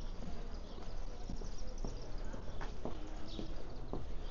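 Street ambience: a steady low rumble of traffic under irregular knocks of footsteps on the pavement, with a short high chirp about three seconds in.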